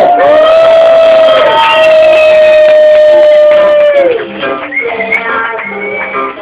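Circuit-bent toy electronics sounding a loud, held electronic tone with buzzy overtones. About four seconds in, the tone slides down in pitch and gives way to quieter, short stepped tones.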